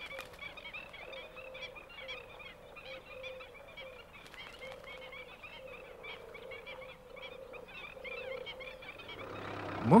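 Black-winged stilts calling: a rapid, continuous run of short, sharp yelping notes from several birds, over a faint steady low tone.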